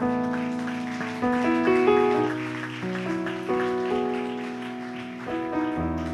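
Slow, soft instrumental music: piano chords struck every second or two and left to ring out, over a faint high shimmer.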